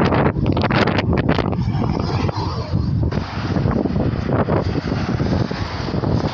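Wind buffeting the microphone in a loud, low rumble, with gusts, over the sound of traffic passing on a busy road.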